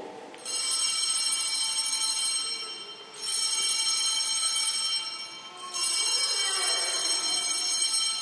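Altar bells rung three times at the elevation during the consecration, each ring a bright, high jingle that starts suddenly and holds for about two and a half seconds before fading.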